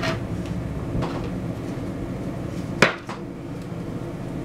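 Oracle card deck being handled on a tabletop: a few light taps and clicks, then one sharper knock a little under three seconds in.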